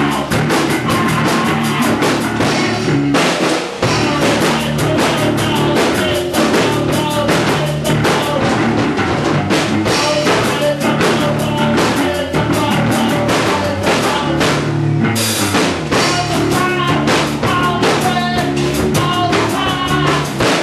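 A punk rock band playing live: fast drums, electric bass guitar and synthesizers, with vocals from the drummer. The playing briefly drops out about four seconds in.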